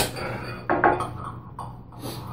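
Spoon scraping and clinking against the inside of a glass salsa jar: a few short strokes, the clearest pair a little over half a second in.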